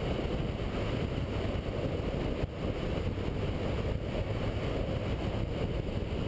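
Steady wind rush on a sport bike's mounted camera microphone as the motorcycle rides along at road speed, with the bike's engine running underneath.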